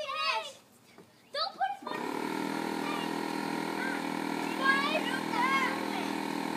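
A motor starts abruptly about two seconds in and keeps running with a steady hum, while children's voices come over it.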